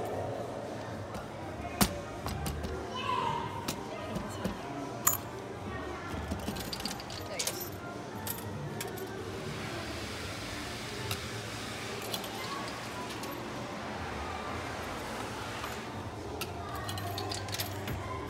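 Tokens in an arcade coin pusher machine: a string of sharp metallic clinks at uneven intervals, the loudest about two and five seconds in, over a steady din of arcade music and voices.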